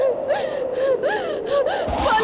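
A woman's high voice in short, breathy, gasping cries that rise and fall in quick arches, like sobbing.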